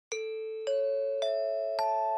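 Four-note rising announcement chime, the Japanese 'pinpon-panpon' kind that signals a notice: four bell-like tones struck about half a second apart, each higher than the one before and each ringing on.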